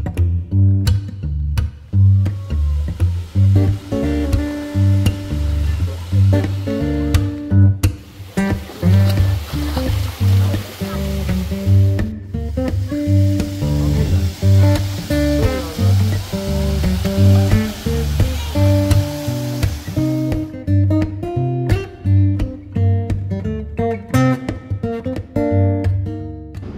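Background music with acoustic guitar over a steady bass beat.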